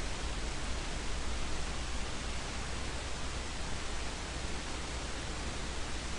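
Steady background hiss with a low hum underneath: the recording's room tone and microphone noise, with no distinct event.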